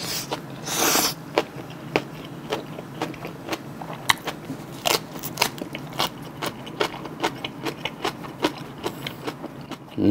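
Close-miked chewing of a mouthful of fresh napa-cabbage kimchi rolled around rice. A louder crunchy bite comes just under a second in, then steady wet chewing with a couple of crisp clicks every second.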